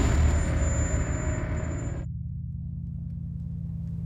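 A loud rumble starts suddenly and cuts off sharply about two seconds in, over a steady low droning tone that continues throughout.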